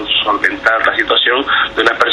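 A man speaking Spanish, his voice cut off above about 4 kHz like a radio or phone-line recording.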